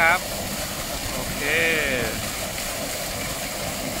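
Large vertical electric water pump discharging at full flow: a heavy jet of water pouring out of its outlet pipe and splashing into the pond, a steady rushing that does not change.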